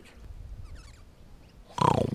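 Mostly low room-and-outdoor noise, then near the end a short, loud buzzing growl made with the mouth into a face-worn bass sensor (a 'face bass'), rattling with fast even pulses as it picks up the low mouth sound.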